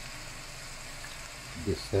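Lamb pieces and onion sizzling gently in oil in a stainless steel pot, a steady low hiss.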